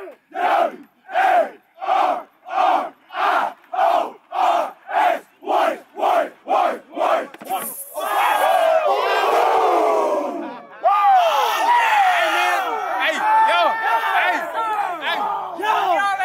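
A football team chanting in unison in a post-game huddle, sharp group shouts about two a second. About eight seconds in the chant breaks into a burst of cheering, followed by loud, overlapping excited yelling.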